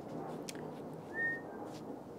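Steady outdoor rumble of a passing vehicle, with one short whistled bird chirp a little past a second in.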